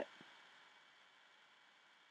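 Near silence: faint steady room hiss, with one faint tick just after the start.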